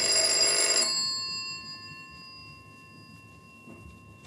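A bright, bell-like metallic ring struck at the start, with several tones ringing on and fading away over about three seconds at the end of a music bridge.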